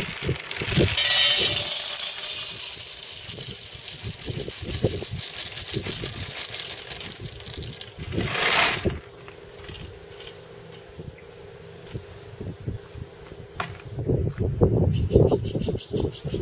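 Wood pellets poured from a plastic jar into a stainless steel stove pot: a dense rattling patter of pellets hitting metal and each other, starting about a second in and ending with a louder final rush after about eight seconds. A few light knocks follow near the end.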